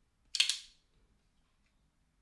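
A Stan Wilson non-flipper flipper folding knife's blade action snapping with a single sharp click about a third of a second in.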